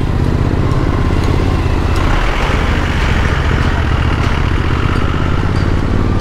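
Suzuki V-Strom motorcycle engine running steadily at low speed, heard from the rider's seat, with a wider noisy rush that swells in the middle.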